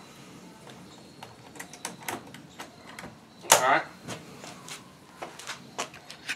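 Light clicks and knocks of hands working at an electric smoker's open door and latch. About halfway through comes one short, louder sound that falls in pitch.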